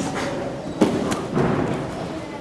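Dull thuds in a gymnastics hall: two short ones about a second in, then a softer burst about half a second later.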